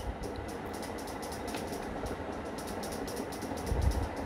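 Steady low background hum with a faint thin steady tone in it, and a soft low bump at the start and a louder low rumble near the end.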